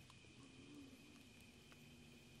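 Near silence: faint room tone in a pause between sentences of a talk.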